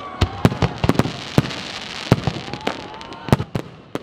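New Year's fireworks display: a dozen or so sharp bangs at irregular intervals from aerial shells bursting, over a continuous crackle.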